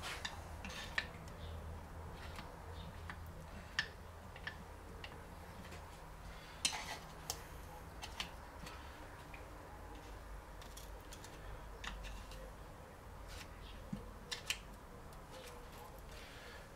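Scattered light metallic clicks and scrapes of a screwdriver prying at the seam between the two halves of a cast aluminium Peugeot BE4 gearbox casing, irregular and a few seconds apart, over a low steady hum.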